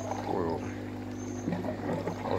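Steady low hum of the aquaponics system's electric water pump running, with water flowing through the system.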